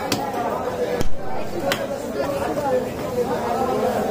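A large knife chopping into a big bhetki fish on a wooden log block: one loud chop about a second in, with two lighter knocks near the start and shortly after, over continuous background chatter.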